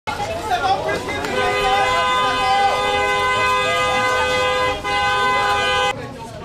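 Car horn sounding a long, steady two-tone blast starting about a second in, with one short break near the end, then cut off abruptly. A crowd's voices chatter underneath.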